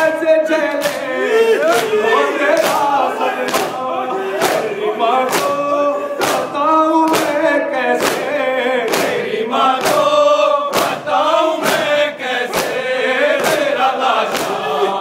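A hall full of men chanting a noha (Shia lament) together in unison, with the slap of hands striking bare chests in matam keeping a steady beat about once a second.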